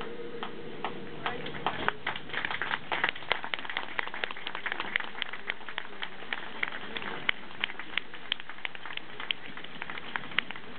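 Scattered hand-clapping from an outdoor crowd: sparse, irregular claps, several a second, welcoming the next speaker to the microphone.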